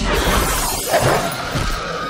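Movie soundtrack: the glass of a truck's cab window shattering as a velociraptor crashes through it, over tense film music. A woman's high scream starts near the end.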